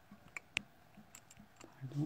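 A few faint, sharp clicks in a quiet room, the clearest about half a second in, then a short voiced murmur with rising pitch near the end.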